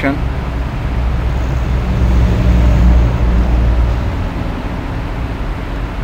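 A low vehicle rumble that swells about two to three seconds in and then eases off.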